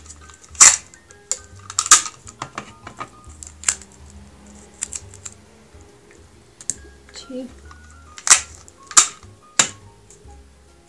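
Sticky tape being pulled from a tape dispenser, torn off and pressed onto a jar lid: a run of short, sharp rips and clicks, loudest about half a second in, about two seconds in, and twice near the end.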